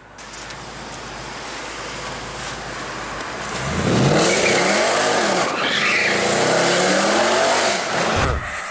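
Car engine revving hard under acceleration, heard from inside the cabin: after a few seconds of road and wind noise it grows louder and its pitch climbs and falls several times.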